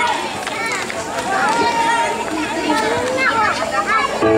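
Several people talking and calling out at once: an audience chattering, some voices high-pitched.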